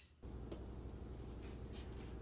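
Room tone: a steady low hum that comes in about a quarter second in, after a brief near-silent gap.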